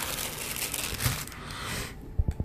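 Plastic packaging crinkling and rustling as a small accessory is dug out of a microphone's box.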